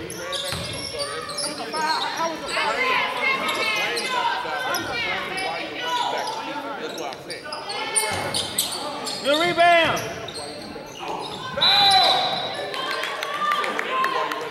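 Basketball bouncing on a hardwood gym floor during live play, with sharp sneaker squeaks as players cut and stop, echoing in a large hall. Players' voices call out over it.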